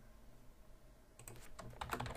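Computer keyboard typing: after about a second of near silence, a quick run of keystrokes.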